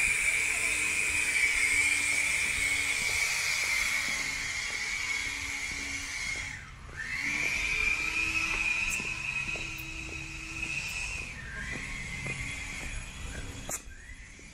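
A high-pitched motor whine with a hiss over it, its pitch dropping sharply and climbing back twice, about seven and eleven seconds in.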